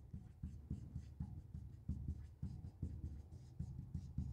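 Marker pen writing on a whiteboard: faint, irregular short strokes.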